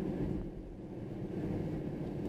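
Steady road and engine noise of a moving car, heard from inside the cabin: a low, even rumble.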